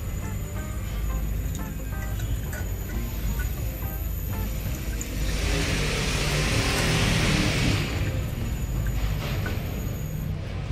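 Background music, with a hiss from a small pot of sugar and water coming to the boil as a whisk stirs it. The hiss swells between about five and eight seconds in.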